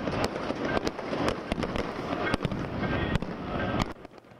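Many fireworks going off together: a dense, continuous crackle with sharp pops and bangs scattered through it, cutting off suddenly near the end.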